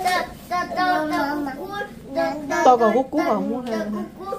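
A young girl singing short phrases in a high child's voice, the notes held and stepping up and down, with brief breaks between phrases.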